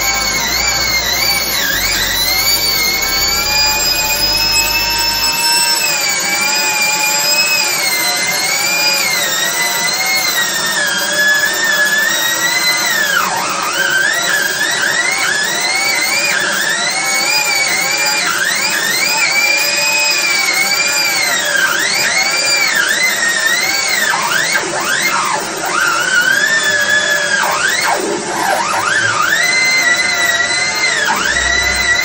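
A high-pressure drain jetter's turbo nozzle spinning inside a root-clogged sewer pipe: a whine that wavers and glides up and down in pitch throughout, with a low rumble underneath that stops about five seconds in.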